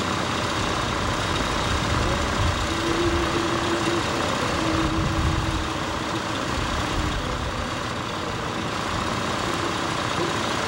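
A car engine idling steadily under a constant hiss.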